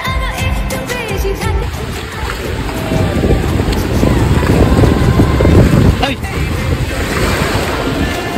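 Bollywood-style background music that stops about a second and a half in, followed by ocean surf washing in on the beach, with wind buffeting the microphone in a heavy, rumbling rush.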